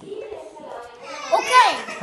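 A young child's high-pitched voice calling out in the second half, its pitch sweeping up and then down.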